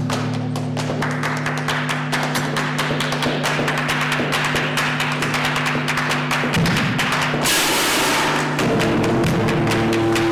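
Amplified electric guitar in a noise improvisation: low droning tones ring on under a fast, dense clatter of strikes on the instrument, with a brief wash of harsh noise about three-quarters through and a new higher tone entering near the end.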